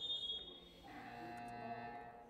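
A short, high whistle tone, then about a second in a faint, steady electronic buzzer held for just over a second: the futsal hall's timekeeping buzzer signalling a team timeout.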